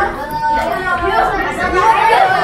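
Several people talking over one another: overlapping chatter of a small crowd.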